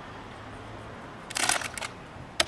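Plastic drink bottle being crushed in the hand: a short burst of loud crackling a little over a second in.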